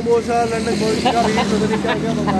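Mostly speech: a man's voice talking, over a steady low hum of road traffic.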